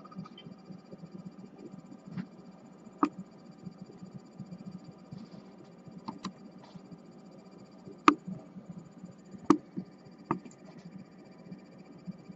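Faint steady hum with a handful of sharp, scattered clicks, the two loudest about eight and nine and a half seconds in.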